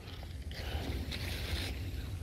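Faint rustling of leaves and undergrowth over a low, steady rumble, with no clear single event.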